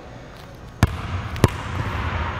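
Basketball bouncing twice on a hardwood gym floor, two hard pound dribbles a little over half a second apart, the second the louder.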